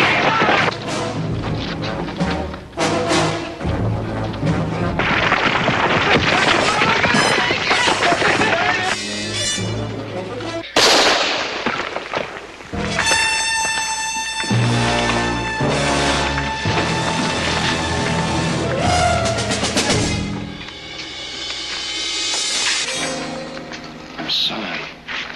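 Dramatic orchestral score with brass, including a held chord about halfway through, mixed with fight and rockfall sound effects: scuffling, repeated impacts and a sharp crack about eleven seconds in.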